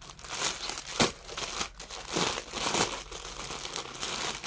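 Clear plastic bag crinkling in several irregular crackly handfuls as a folded suit is pulled out of it.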